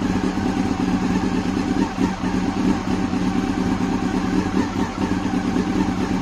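Yamaha R6 sport motorcycle's inline-four engine idling steadily.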